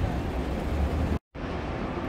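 Outdoor city street ambience: a steady low rumble of traffic with a noisy hiss over it, dropping out to silence for a split second just past the middle.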